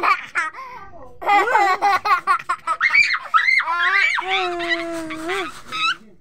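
Toddler laughing and squealing: quick bursts of laughter, then a few longer high calls.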